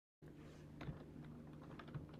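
Faint computer keyboard key presses, a handful of scattered clicks over a low steady hum, starting a moment in after dead silence.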